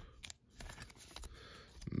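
Faint rustling and a few light clicks of trading cards and a plastic card sleeve being handled.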